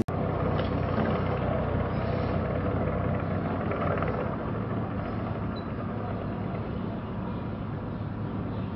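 Tracked armoured vehicle driving past close by: a steady engine hum with the dense noise of its running gear, a little louder in the first half and easing slightly after.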